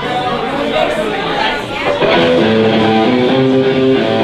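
Bar crowd talking over one another, then about two seconds in a live band's amplified electric guitar comes in loud with held chords.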